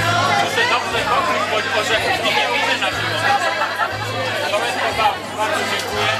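Crowd chatter: many people talking at once, close around, with music playing underneath.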